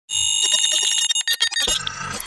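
Electronic intro sound effect: a steady, buzzy alarm-like beep that breaks into rapid stuttering glitch pulses about a second in, then a sudden low hit that leads into music.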